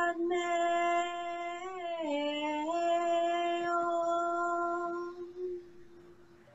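A woman chanting one long held note on a steady pitch. The note dips briefly about two seconds in, turns softer and more muffled later on, and fades out shortly after five seconds.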